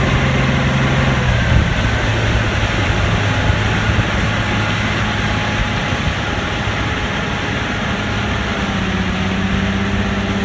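300-horsepower outboard motor running at cruising speed with the boat under way, over the rush of the wake. The engine note drops slightly about a second and a half in.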